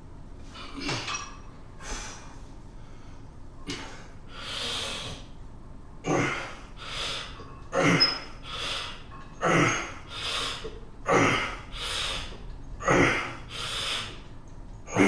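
A man breathing hard through a set of heavy seated barbell overhead triceps extensions. A few loose breaths come first; from about six seconds in, a sharp exhale on each rep alternates with a quick inhale, about one rep every second and a half to two seconds.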